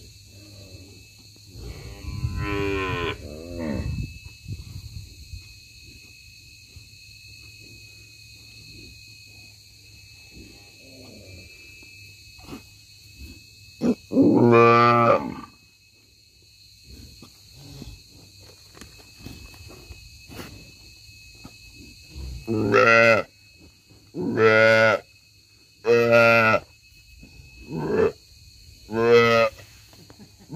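Nelore cattle bawling repeatedly and loudly. There are a couple of calls early, one long call about fourteen seconds in, and a run of five short calls in the last eight seconds.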